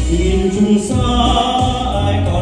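A man singing a slow ballad live into a handheld microphone over full band accompaniment, the vocal line sliding between held notes.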